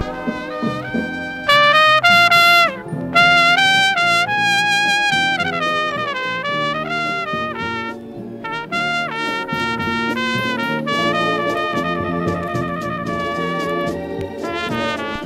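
High-school marching band playing a brass-led melody: high held trumpet notes over lower brass, loudest in the first few seconds.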